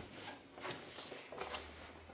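Faint rubbing and shuffling handling noise from a hand-held camera being carried around, with a few soft bumps.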